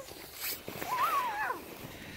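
Faint rustling of snowsuits and snow as small children push through deep snow. About a second in there is a short, high-pitched vocal sound from a young child that rises and then falls.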